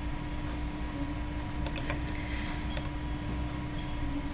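A few short, sharp clicks of a computer mouse and keyboard, mostly around the middle and near the end, over a steady electrical hum.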